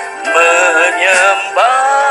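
A man singing a worship song into a microphone over sustained background music, holding long notes with vibrato in two phrases.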